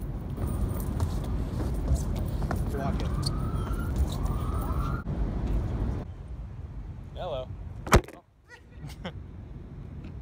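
Wind buffeting a phone microphone as a low rumble, with brief snatches of voices. After a cut it goes quieter, and a single sharp knock comes about eight seconds in.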